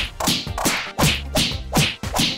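A quick run of whip-crack slap sound effects, about five in two seconds, each a fast falling swish.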